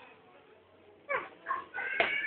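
A small child's voice: two short, high calls falling in pitch about a second in, after a quiet moment.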